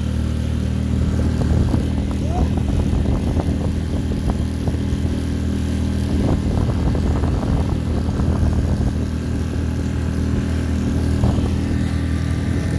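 Small outboard motor on an inflatable dinghy running steadily under way, with water rushing past the hull.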